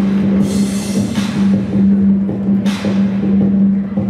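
Music playing over the arena sound system: a steady low held note with several short swells of noise on top.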